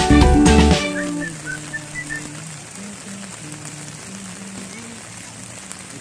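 Background music cuts off about a second in, leaving the steady hiss of rain falling.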